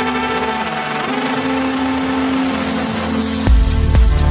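Melodic techno / deep house breakdown: sustained synth tones with a swelling noise sweep, then the kick drum and full beat drop back in about three and a half seconds in.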